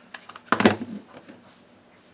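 Plastic-bodied cordless screwdriver being handled and set down on a wooden table: a few light knocks, the loudest about half a second in, then a couple of faint clicks.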